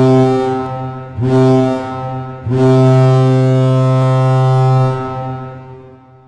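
The Trois-Rivières Lions' hockey goal horn, the horn that signals a goal, sounding in blasts: two short blasts, then one long low blast of about two and a half seconds that fades away near the end.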